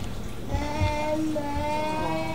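A young child whining: one long, drawn-out wail at a fairly even pitch, starting about half a second in.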